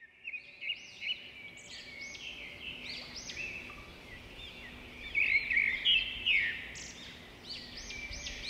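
Many small birds chirping and twittering over each other in a forest ambience, with short rapid chirps that come in suddenly and grow busier a little past the middle.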